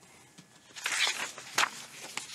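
Sheets of paper being picked up and handled at a desk: a rustle about a second in, then a sharp crackle.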